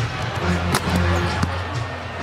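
A basketball bouncing on a hardwood court: one sharp bounce a little over a third of the way in and a lighter one later.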